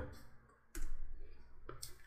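A computer keyboard's Enter key pressed once, a single sharp click about three-quarters of a second in, running a typed command.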